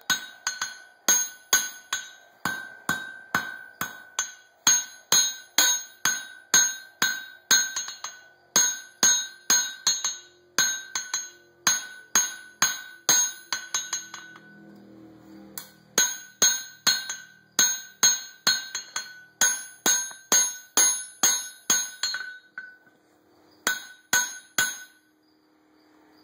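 Blacksmith's hammer striking red-hot coil-spring steel on an anvil in a steady run of blows, about two to three a second, each with a high metallic ring. The blows stop for about two seconds midway, then resume, with short breaks near the end.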